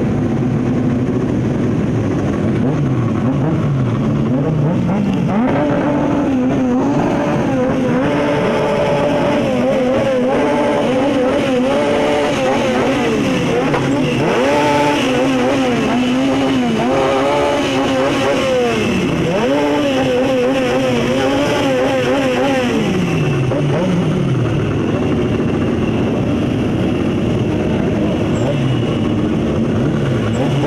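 Midget race car engine revving while the car stands still, its pitch climbing and dropping in repeated blips of the throttle.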